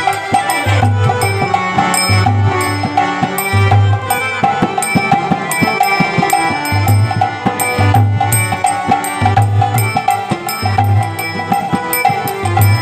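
Harmonium playing a bhajan tune with sustained reedy chords, over percussion with a regular low drum beat and sharper tabla-like strokes.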